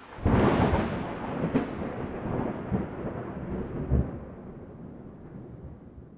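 Thunder sound effect: a sharp crack just after the start, then a long rolling rumble that slowly fades away, with another crack about a second and a half in and a further boom about four seconds in.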